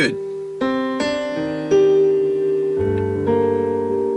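Slow piano notes from a recorded song playing through the Subaru BRZ's stock car stereo, heard inside the cabin: single notes and chords ringing on one after another, with a deeper low note joining about three seconds in.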